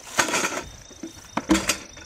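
A heavy-duty cardboard shipping tube being handled with its end cap worked at. The sound is a few short knocks and scrapes, in two clusters about a second apart.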